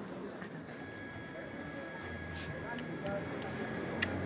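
Faint, indistinct voices over low background noise, with a low steady hum coming in about two seconds in.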